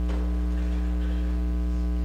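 Steady electrical mains hum with a stack of even overtones, running unchanged through a pause in speech.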